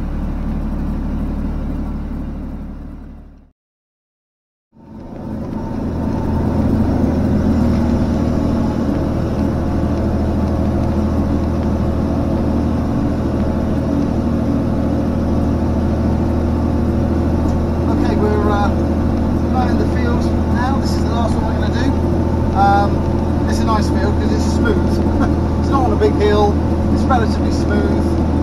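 John Deere tractor engine running steadily, heard from inside the cab. It fades out a few seconds in and comes back slightly louder, running on as the tractor drives.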